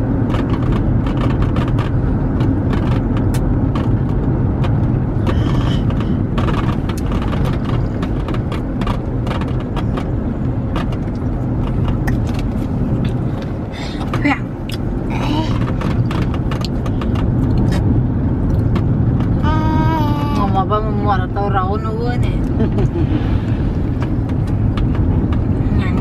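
Steady low rumble of a car heard from inside its cabin, with a voice speaking briefly about twenty seconds in.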